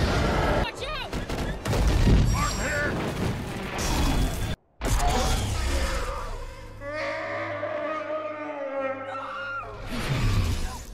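Film soundtrack of a space battle: an explosion and rapid blaster fire with music underneath. About four and a half seconds in, the sound cuts off briefly to silence, then picks up with a dramatic orchestral score of long held notes.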